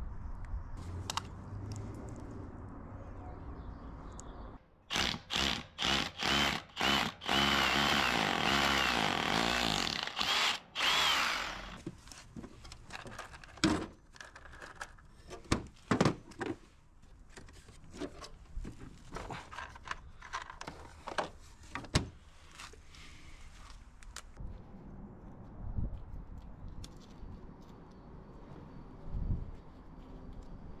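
Power drill run in several short bursts, then held for a few seconds, drilling into a pebbledash-rendered masonry wall, starting about five seconds in. Scattered sharp clicks and knocks from handling tools and plastic parts cases follow.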